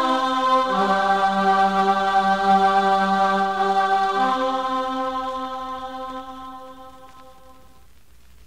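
The closing bars of a recorded song: long held chords that change twice, about a second in and about four seconds in, then fade out gradually over the last few seconds.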